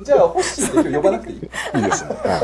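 Several people chuckling and laughing over a joke, their laughter mixed with bits of talk.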